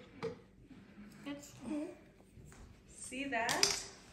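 Indistinct, low voices, then a louder, higher-pitched voice about three seconds in. There is a short light click near the start.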